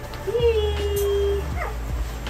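Newborn puppies whining while nursing: a long, steady whine starting about half a second in, then a short squeak that falls sharply in pitch near the end.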